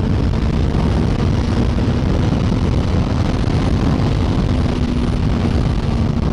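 Suzuki GSX-S 1000's inline-four engine running steadily at highway cruising speed, mixed with heavy wind rush over the microphone.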